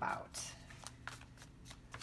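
A deck of tarot cards shuffled by hand: a run of short, irregular papery card slaps and flicks.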